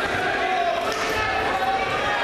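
Dull thuds of bodies on a wrestling mat, twice, over steady chatter of voices in a large gym hall.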